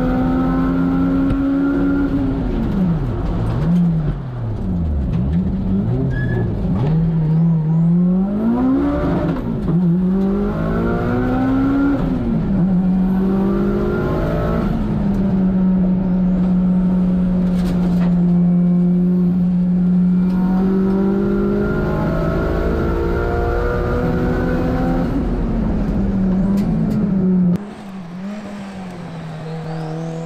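Turbocharged race car engine at full throttle heard from inside the cockpit, revs climbing and dropping sharply through gear changes and corners, with a long steady high-rev pull in the middle. Near the end the sound turns suddenly quieter and more distant, then the revs rise again.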